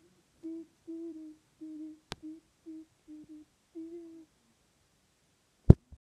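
A boy humming a string of about nine short notes at nearly the same pitch, with a sharp knock near the end.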